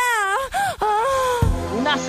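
A woman's long, wavering moaning vocal in a song intro, breaking into a few shorter moans, then a music beat with deep bass comes in about one and a half seconds in.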